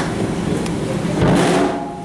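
Drum kit played live on stage, with one loud hit about a second in that rings out briefly before the sound drops away.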